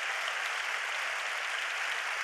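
Church congregation applauding, a steady patter of many hands clapping.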